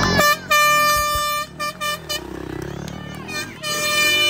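A spectator's plastic horn blown: a steady, held blast for about a second, two short toots, then another long blast near the end. Crowd voices fill the gaps.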